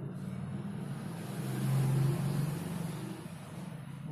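Low rumble of a motor vehicle that swells to its loudest about halfway through and then fades.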